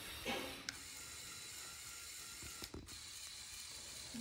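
Faint mechanical running of the Lego Technic 42055 bucket wheel excavator's motor-driven gear train working the boom, with a couple of short clicks.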